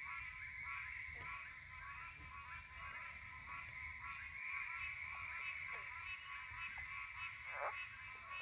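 Pine Barrens tree frog calling: short, nasal honking notes repeated at an even pace throughout, over a steady high-pitched drone.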